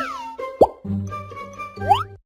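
Background music with a cartoon plop sound effect about half a second in, then a quick rising whistle-like glide near the end.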